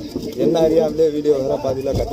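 A man talking close to the microphone, in a low voice.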